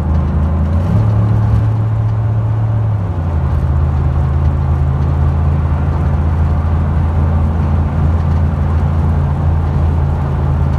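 Dodge Ram pickup's Hemi V8 engine running at road speed, a steady low drone heard from inside the cab, its pitch shifting about a second in and again about three seconds in. It is running on a fresh tune-up, with all 16 spark plugs newly replaced.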